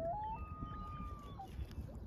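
A single drawn-out animal call: a few short rising notes lead into one long, steady high note lasting about a second, which drops away at the end. A low wind rumble on the microphone runs underneath.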